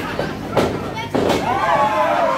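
Two sharp impacts about three-quarters of a second apart, from wrestlers striking each other or slamming onto the ring mat. Voices from the crowd rise and fall in reaction after the second impact.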